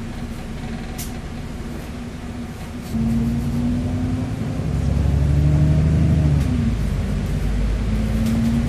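Cummins diesel engine and Voith automatic gearbox of an Alexander Dennis Enviro400MMC double-decker bus, heard from inside the passenger saloon. The engine takes up load about three seconds in and gets louder, with a faint rising gearbox whine. The note drops briefly near the end, as at a gear change, then picks up again.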